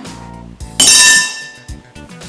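A fork clinks sharply against an empty bowl about a second in, ringing briefly with a metallic tone, over background music.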